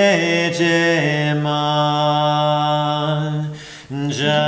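A man chanting kirtan solo, a cappella. He holds long sustained notes, shifting pitch about half a second in, then holds one long note that fades near the end.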